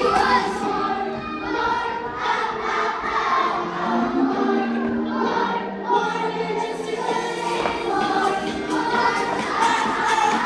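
A group of young children singing together along with music.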